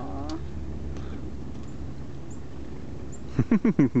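A low, steady outdoor rumble, with a brief voice at the start and a person's voice in several short, loud bursts near the end.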